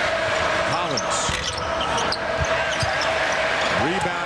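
Basketball game in a packed arena fieldhouse: steady crowd noise, with a basketball thudding on the hardwood court a few times.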